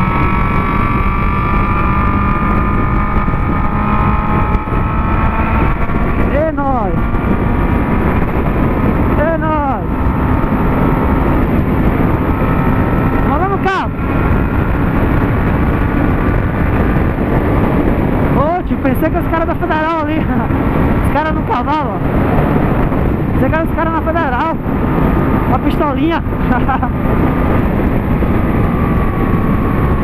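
Honda CB600F Hornet's inline-four engine with an Atalla 4x1 exhaust, running at highway cruising speed under heavy wind noise. Its note steps up a little after about six seconds.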